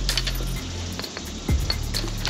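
Several sharp metallic clinks and clicks as the fishing rig is handled against the metal fence rail, over background music with a low bass line.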